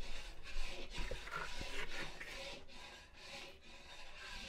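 A metal spatula scrapes sticky khowa (thick cooked-down milk paste) off against the rim of a stainless-steel tumbler, making a run of irregular rasping scrapes.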